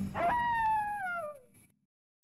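A single coyote howl, about a second long, gliding steadily down in pitch before fading out.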